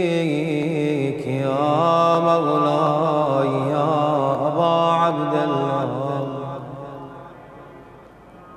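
A solo male voice chanting a slow, ornamented lament without clear words, holding long wavering notes, then fading away over the last two seconds.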